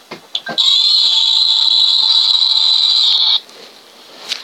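Loud, harsh, high-pitched screeching roar, a Godzilla-style monster roar sound effect on the movie's soundtrack. It starts about half a second in, holds steady for nearly three seconds, and cuts off abruptly.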